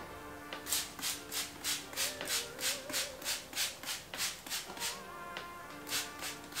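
Hand-pumped spray bottle spritzing onto hair in quick repeated strokes, about three sprays a second, over background music.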